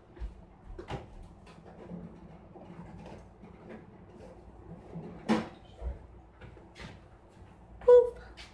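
Faint rustling and scattered light clicks as a person changes into fresh blue disposable gloves, pulling them on, with a short, sharper sound just before the end.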